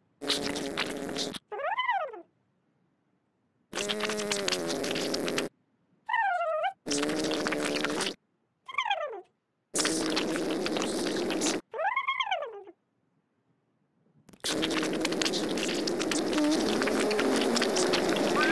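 Cartoon sound effects: a buzzy, rasping drone that comes in stretches of one to two seconds, with a longer one of about four seconds near the end, marking a dark line being drawn along the wall. Short squeaky chirps that rise and fall in pitch come between the stretches, from the little character.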